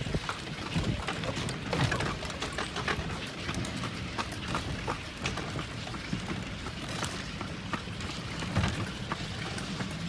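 Horse-drawn carriage moving along a paved street: the horse's hooves clip-clop in sharp, irregular clicks over the noise of the carriage rolling.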